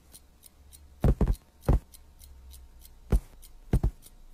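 Cartoon cat's paw footsteps: a few soft thumps in uneven groups as the cat hops up onto the bed and pads across the sleeper. A faint, quick, regular ticking runs underneath.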